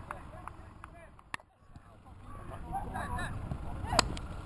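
Wind rumbling on the microphone, with one sharp knock about a third of the way in and distant shouted voices near the end.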